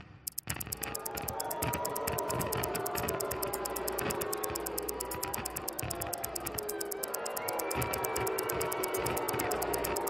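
Soft background music with a fast, even ticking running over it, a countdown timer's tick while the puzzle awaits an answer.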